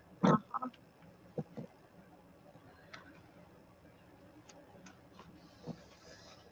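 A short 'uh' from a voice, then mostly quiet with a few faint, scattered taps and rustles of paper and thread being handled as a book signature is hand-sewn.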